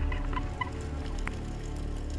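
Underwater sound through an action camera's housing: a low, muffled rumble of water with faint scattered clicks, and a few short high blips in the first half-second.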